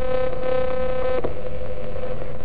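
Spirit box sweeping through radio frequencies: a steady humming tone with overtones that changes abruptly a little over halfway through, as the sweep jumps.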